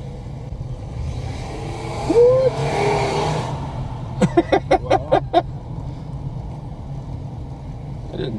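Car driving slowly, heard from inside the cabin as a steady low engine and road hum, with a rush of noise that swells about two seconds in and fades about a second and a half later.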